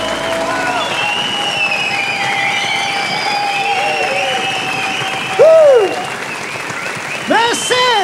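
Studio audience applauding and cheering as the band's final chord dies away in the first second, with whistles and two loud shouts in the second half.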